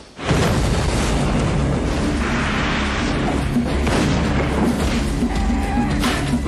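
Movie-trailer sound mix: a sudden explosion boom cuts in out of a brief hush just after the start, then loud dramatic music with a low rumble under it.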